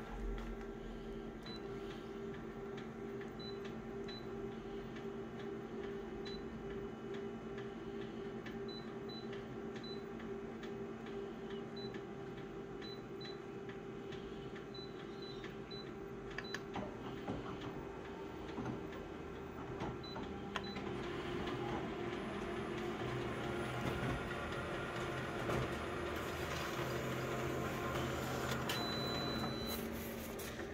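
Office colour multifunction copier making an enlarged copy: a steady mechanical hum with several held tones and faint, intermittent high tones. It grows louder in the last third as the print runs.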